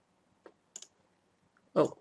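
A few faint computer mouse clicks: a single click, then a quick pair close together a little before a second in.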